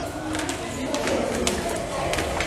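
A pigeon cooing, a low steady coo in the first half, with light footsteps on stone stairs.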